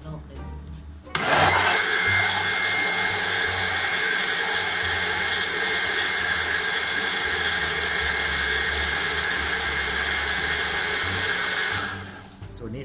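Countertop electric blender switched on about a second in, running steadily for about ten seconds as it blends a thick egg-and-oil salad dressing, then switched off just before the end.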